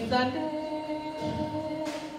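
A monk's voice chanting a sermon in a sung, melodic style, moving briefly in pitch at the start and then holding one long, steady note.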